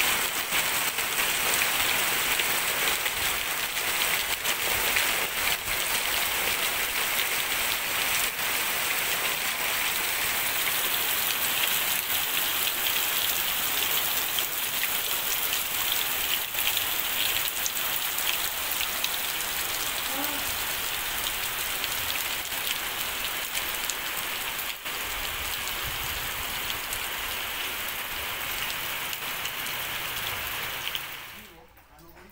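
Steady rain falling on the ground and surrounding surfaces, an even hiss of drops that eases slightly toward the end.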